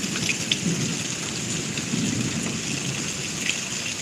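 Steady rain falling, with a long low roll of thunder rumbling on through it.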